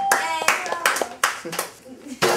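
A small group clapping and laughing after a correctly spelled word, with a short electronic 'correct answer' chime dying away in the first half second.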